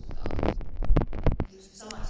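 A woman talking into a handheld microphone, her voice through the hall's loudspeakers heard as a heavy, throbbing low hum with little clear speech. It drops away about one and a half seconds in.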